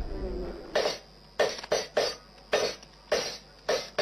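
Blacksmith at work at a forge: seven short, sharp strokes at uneven intervals of about half a second, starting under a second in. Each one dies away quickly.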